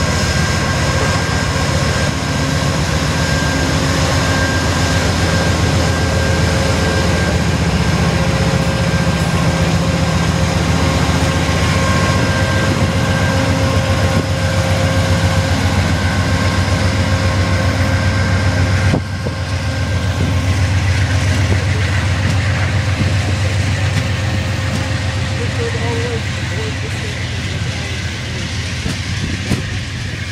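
Amtrak P42 diesel-electric locomotive running close by: a steady low drone with several steady whining tones above it. The sound drops abruptly about 19 seconds in, then carries on.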